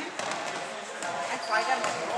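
Indoor futsal game in a reverberant sports hall: the ball being kicked and bouncing on the hall floor, with a short shout from a player or spectator about a second and a half in.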